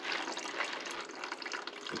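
Water draining down a PVC pipe into a plastic jerry-can grease trap, a steady running sound.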